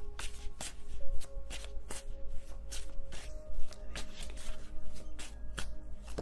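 A deck of oracle cards being shuffled by hand: a steady run of short, sharp card snaps and slaps, several a second. Soft background music with held notes sounds under it.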